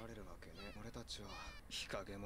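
Faint anime dialogue under the talk: a little girl's high voice chanting "Banyanya!" over and over in a cat-like, meowing way, followed by a man's voice speaking.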